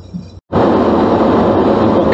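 Steady road noise of a car driving at motorway speed, heard from inside the cabin: a rush of tyres and wind over a low drone. It is faint at first, drops out for an instant about half a second in, then comes back much louder.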